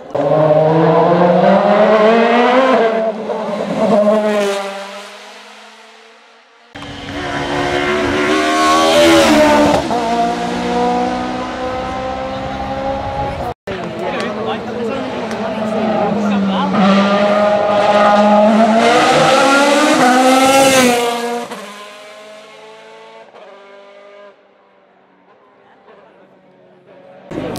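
DTM touring-car racing engines at full throttle on a hill climb, three cars passing in turn. Each engine's pitch climbs and drops sharply at each upshift, and a more distant engine is heard approaching near the end.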